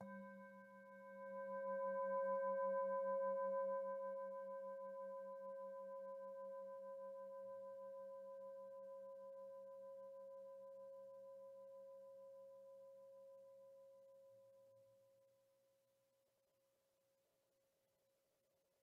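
A metal singing bowl struck with a wooden mallet, giving one long ringing tone made of several pitches with a low wavering hum. It swells over the first couple of seconds, then slowly fades out over about fifteen seconds.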